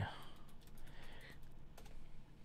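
Typing on a computer keyboard: a quick, uneven run of light key clicks.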